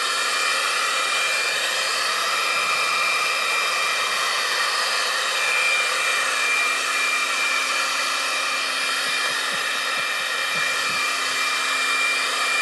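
A leaf blower running steadily, blowing a strong stream of air straight up: an even rushing of air with a steady high whine.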